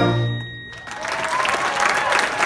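A middle school concert band's final held chord, mainly brass, cutting off under a second in, followed by audience applause.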